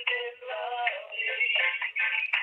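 Music coming over a phone line and playing through the speakerphone of an AT&T cordless handset. The sound is thin and tinny, cut to the narrow telephone band.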